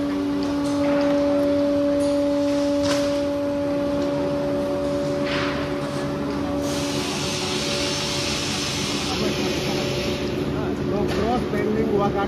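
Plywood factory machinery humming at a steady pitch, with a second hum joining partway through and a hiss for a few seconds past the middle, over background voices.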